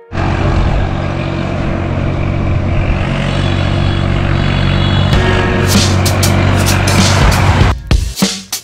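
A motor vehicle's engine running close by, with steady road noise. A hip-hop music beat comes in over it about five seconds in, and the road sound cuts off abruptly just before the end.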